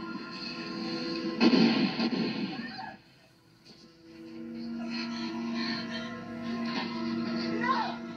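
Film soundtrack music playing through a television speaker, with held tones. About a second and a half in, a loud burst of noise lasts over a second. Then the sound drops low for about a second before the music returns.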